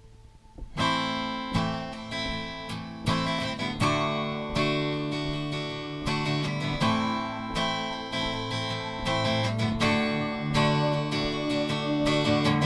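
Acoustic guitar strumming chords, starting about a second in.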